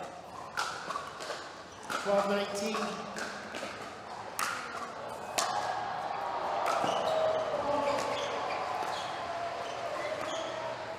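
Pickleball paddles striking a hard plastic ball in a rally: a series of sharp, irregular pops. Spectator voices run underneath and get louder from about halfway through.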